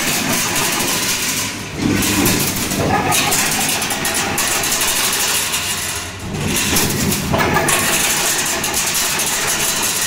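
Chain link fence making machine running: a steady motor drone under a bright metallic rattle and hiss, with a brief lull about every four and a half seconds as the machine cycles.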